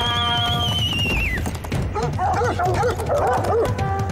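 Several hunting dogs yelping and barking in quick, overlapping calls from about halfway through, over background music. Before that, a long high whistling tone rises slightly and then fades out a little over a second in.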